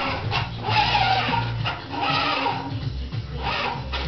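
A person laughing in repeated bursts, with music and a steady bass line underneath.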